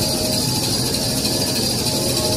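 Semi-automatic glue-laminated kitchen towel maxi roll paper machine running: a steady, loud mechanical noise with a high, even hiss.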